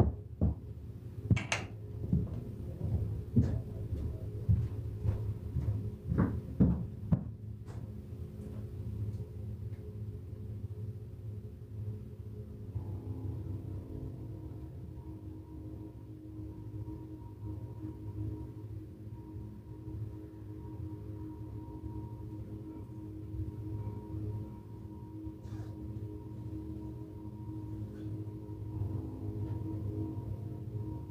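Several sharp knocks and thumps over the first few seconds, as of things being moved and cupboards or doors handled nearby. Then a steady low room hum, with faint held tones like soft ambient music or a singing bowl joining a little before halfway.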